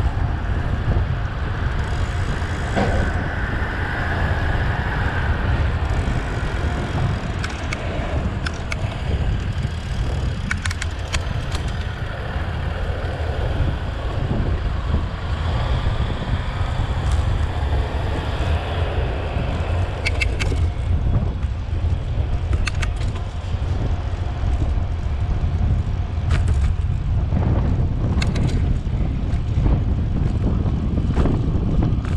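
Wind buffeting the microphone of a camera on a moving bicycle: a steady low rumble, with a few brief clicks scattered through.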